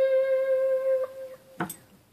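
A single sustained note on a Hawaiian lap steel guitar in G6 tuning, played with a steel bar: the top C that ends a C major scale, ringing steadily and fading away about a second and a half in. A short click follows just after.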